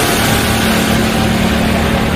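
Intro sound effect under an animated title card: a loud, steady rushing noise with a low hum beneath, leading into the intro music.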